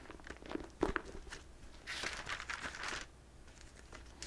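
Pages of a Bible being leafed through: a few light paper flicks and rustles in the first second, then a longer paper rustle about two seconds in as a stretch of pages is turned.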